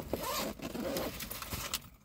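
Zipper on the bottom compartment of a hanging toiletry bag being pulled open: a fast run of fine clicks that stops just before the end.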